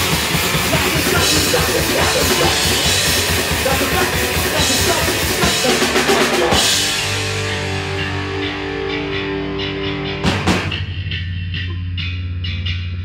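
Hardcore punk band playing live with drums, distorted electric guitars and bass going full tilt; about six and a half seconds in the pounding stops and sustained ringing notes hang on, broken by one sharp hit just after ten seconds.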